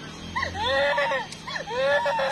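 A young woman crying out in high-pitched wailing sobs, two long cries that each rise and fall in pitch.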